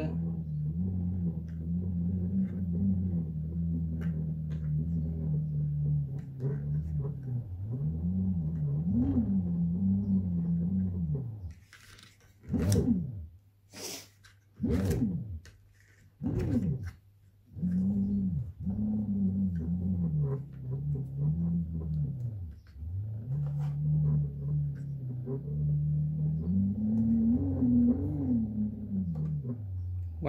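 Fisher & Paykel Smart Drive washing-machine motor run as a generator, its rotor being turned: a low humming drone whose pitch rises and falls with the rotor's speed. Near the middle it breaks into a few quick rising-and-falling sweeps.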